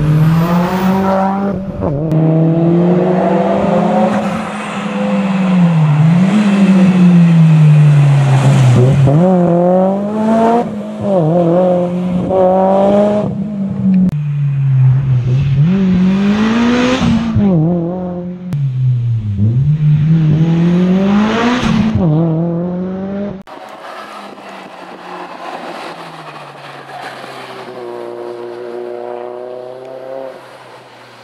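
Rally car engine at full throttle, its pitch climbing and falling again and again as it revs up, shifts and lifts for the bends. About three-quarters of the way through it becomes much quieter and more distant, still rising in pitch.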